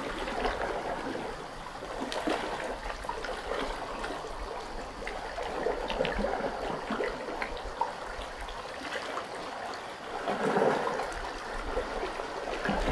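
Water trickling and splashing: a steady rushing noise dotted with many small splashes, swelling a little near the end.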